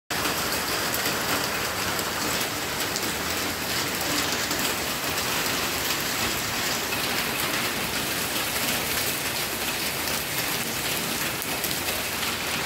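Rain falling steadily, a continuous even patter of drops that does not let up.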